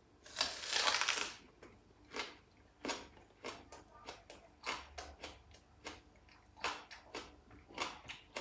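A person biting into a whole peeled raw onion, a long crunch in the first second, then chewing it with a string of short, irregular crunches.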